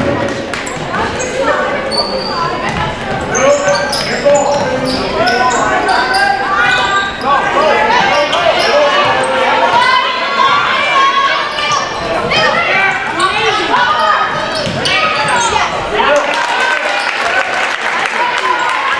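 A basketball dribbled and bouncing on a hardwood gym floor during play, with voices of players and spectators echoing through a large gym.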